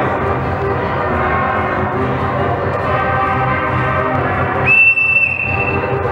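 Ragtime dance music playing, and about four and a half seconds in a whistle blows one steady, high, piercing blast, loud for about half a second, then held on more faintly for under a second.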